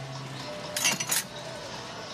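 A quick run of light clinks of kitchenware, like a mug or spoon knocking against crockery, about a second in.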